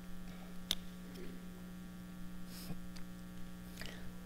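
Steady electrical mains hum with a faint click about two-thirds of a second in.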